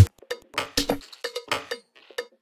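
Minimal tech house track in its closing bars: the kick and bass drop out at the start, leaving sparse, irregular electronic percussion hits, clicky with a short pitched ring, about three or four a second.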